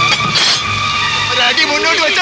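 A film soundtrack mix: steady rain hiss under a held musical note, with a short noisy burst about half a second in. Raised voices come in from about a second and a half.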